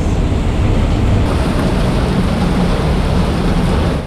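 Heavy rain pouring down onto paving and plants, a loud, steady rushing hiss.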